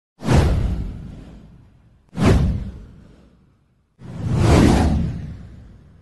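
Three whoosh sound effects in a row, about two seconds apart, each fading away over a couple of seconds; the first two hit sharply and the third swells in more slowly.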